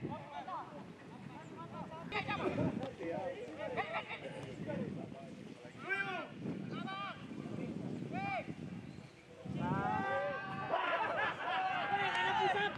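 Men's voices shouting across an open football pitch: a few single drawn-out calls, then from about two-thirds of the way in many voices shouting at once.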